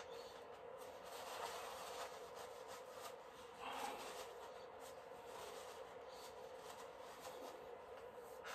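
Faint soft rubbing of a bristle brush working oil paint on canvas, over a low steady room hum.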